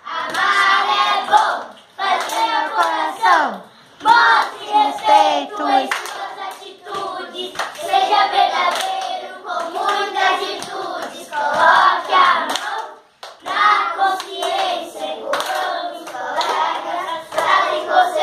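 A group of children singing together in phrases while clapping their hands in a body-percussion rhythm, with short breaks between phrases.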